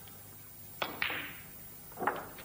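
Snooker shot about a second in: two sharp clicks a fifth of a second apart, the cue tip on the cue ball and then ball on ball, the second followed by a brief ring.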